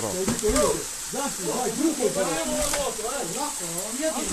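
Several people talking indistinctly over a steady hiss of shallow running water.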